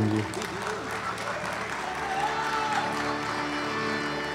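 Audience applauding over a steady instrumental drone from the stage accompaniment, with a short melodic phrase from an instrument about two seconds in.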